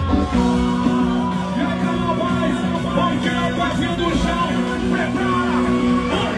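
Live band playing loud, upbeat rock-style music, with electric guitar and a sung melody over it.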